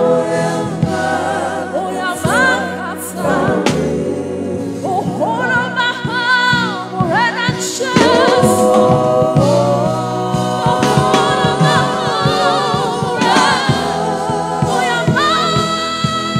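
Live gospel worship song: a woman sings the lead into a microphone, her sustained notes wavering with vibrato, with backing singers joining over a steady musical accompaniment.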